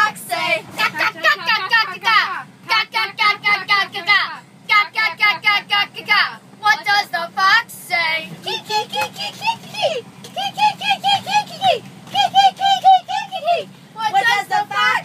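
A group of children singing and chanting together in high voices, with quick runs of repeated nonsense syllables from about halfway through, over the steady low drone of a school bus engine.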